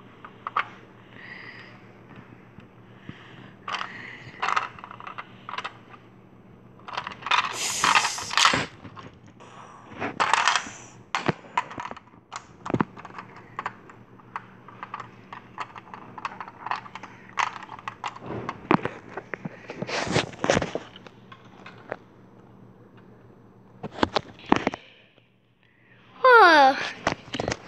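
Irregular clicks, taps and rustling from objects being handled close to the microphone, with louder rustling bursts about 8, 10 and 20 seconds in, over a faint steady hum.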